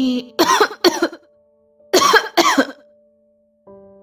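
A person coughing in two short bouts of two, about a second and a half apart, over faint held notes of soft background music.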